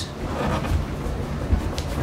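A microfiber cloth is rubbed and scrubbed over a Peavey RQ2310 mixing console's panel and knobs, giving a rough handling noise with a couple of light knocks about a second and a half in.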